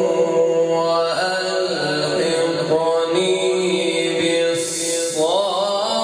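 A man reciting the Quran in melodic tajweed style, holding long, ornamented notes with slow pitch bends and a rising glide near the end.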